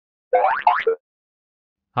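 A short cartoon-style 'boing' sound effect with two quick upward pitch glides, lasting well under a second, followed by silence.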